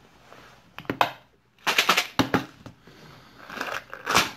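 Sharp plastic clicks and rattles from a Bean Boozled jelly-bean jar's spinner top being handled and twisted. There is a click about a second in, then a quick run of clicks about two seconds in, and fainter clicks near the end.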